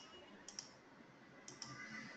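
Faint clicking at a computer, three pairs of quick clicks over near silence.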